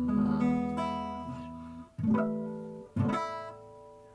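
Acoustic guitar chords strummed and left to ring out: a sharp strum about two seconds in and another about three seconds in, each fading away, quieter toward the end.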